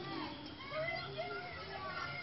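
Indistinct voices of several people talking and calling outdoors, the words not clear.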